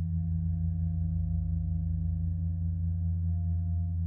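Paiste 28-inch bronze gong played with a flumi friction mallet rubbed across its face, giving a steady low drone with a wavering, beating pulse and no struck attacks.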